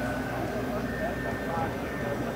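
Altendorf sliding table saw just switched on, its blade motor running up to speed with a steady sound, under the chatter of background voices.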